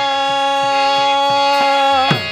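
Devotional kirtan music: a long note held steady on harmonium and voice, over regular mridanga drum strokes, about three a second.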